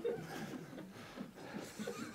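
Faint, soft chuckling and low voices from people in the room, right after a joke.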